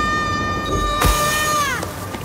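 A child's long, held high scream while sledding downhill, slowed and pulled down in pitch until it dies away near the end, a tape-stop effect. A single thump about a second in.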